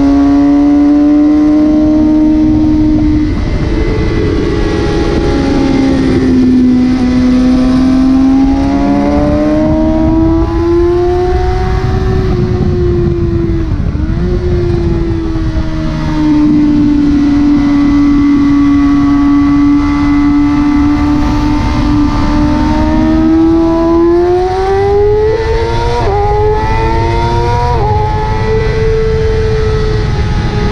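Sport bike engine at high revs on a race track, its pitch rising and falling through the corners, with quick gear changes shown as sharp jumps in pitch near the middle and twice toward the end. Heavy wind rush over the onboard microphone runs underneath.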